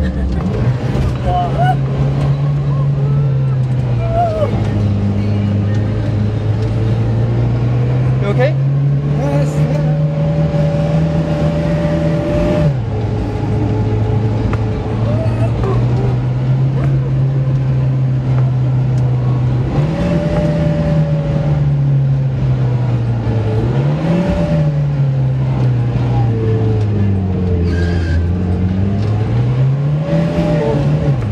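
Nissan Patrol 4x4's engine revving up and down as it drives over sand dunes. The engine pitch climbs and falls, drops suddenly about twelve seconds in, and blips up and down again near the end, over a steady rush of tyre and wind noise.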